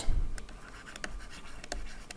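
A stylus writing by hand on a tablet screen: light scratching with a few sharp taps.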